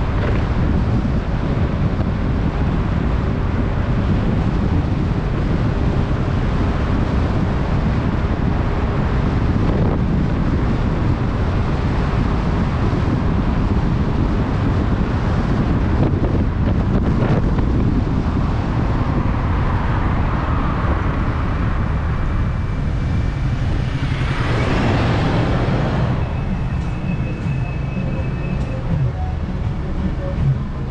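Wind rushing over the microphone of an electric scooter in motion, with road and traffic noise. About 24 seconds in, a loud hiss lasts roughly two seconds.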